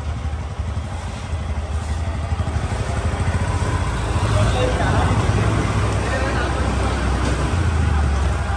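A motorcycle engine running at low revs close by, a steady low rumble that grows a little louder partway through, with faint voices behind it.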